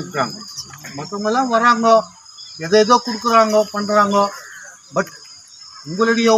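A man's voice speaking in phrases with short pauses, over a steady high-pitched chirring of crickets.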